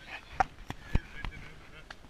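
A handful of short, sharp clicks and knocks, about five in two seconds, with faint voices.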